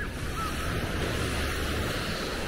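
Small waves washing onto a sandy beach, a steady surf wash, with wind buffeting the microphone as a low rumble.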